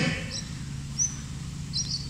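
Three brief, high bird chirps spread over two seconds, over a faint steady low hum.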